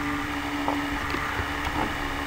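A steady electrical hum with background hiss from the recording chain, heard in a pause between spoken sentences.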